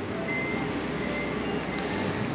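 Steady city street background noise with faint music underneath, a few soft held notes.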